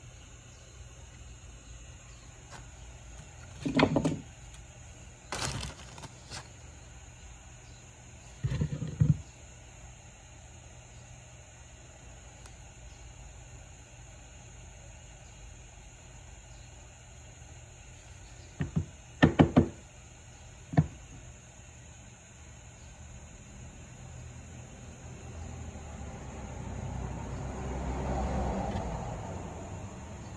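Scattered knocks and clicks of tools and small objects being handled and set down on a wooden workbench, in a few short clusters, with a swell of noise building over the last few seconds.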